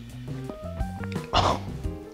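Background music with a plodding melody; about a second and a half in, a man gives one short rasping 'keuh' from the throat, a reaction to the strong salty taste of the paste he has just eaten plain.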